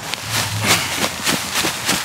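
Irregular rustling and crinkling as a soil-filled fabric grow bag is handled and tipped over on plastic sheeting.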